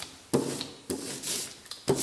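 Hand brayer rolled back and forth through oil-based printing ink on a glossy sheet. Each stroke gives a short hiss, with sharp knocks about a third of a second in, just before one second and near the end as the roller comes down.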